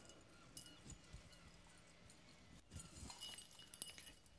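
Near silence: room tone with a few faint, scattered knocks and shuffles.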